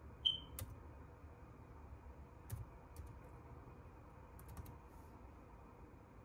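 Faint keystrokes on a laptop keyboard as a word is typed: a few separate taps, then a quick run of four. A brief high-pitched chirp comes just before the first tap.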